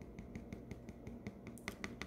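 Faint rapid clicking, about eight small clicks a second, with a few sharper clicks near the end.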